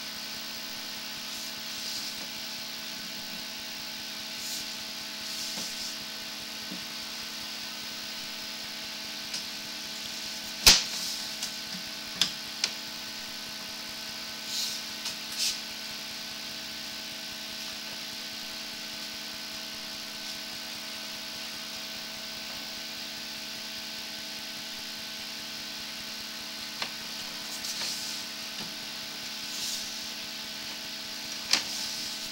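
Steady electrical hum and hiss of a sewer inspection camera rig while its push cable is drawn back through a drain line. Scattered clicks and knocks are heard, the sharpest about eleven seconds in, with a few more shortly after.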